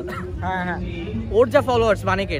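A dog barking and yipping, a call about half a second in and sharper high yips in the second half, over background music.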